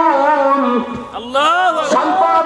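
A man's voice chanting a melodic line over a microphone: a long held note fades out just under a second in, then a short rising-and-falling vocal run near the end.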